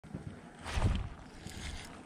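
Wind rumbling on the microphone, with one stronger gust just under a second in.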